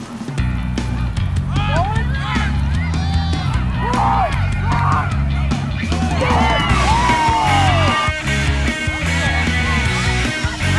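Background music: a rock song with a heavy, steady bass beat and singing comes in about half a second in.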